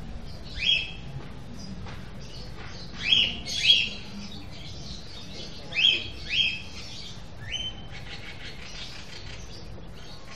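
Canary calling: short, sharp chirps, mostly in pairs, about six in all, with a faint rapid twittering near the end.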